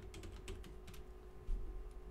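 Computer keyboard typing: a quick run of key clicks, thinning out in the second half, with a low thud about one and a half seconds in.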